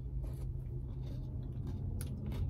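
Quiet chewing of a spoonful of McFlurry with crunchy bits, a few faint clicks, over the steady low rumble of an idling truck engine.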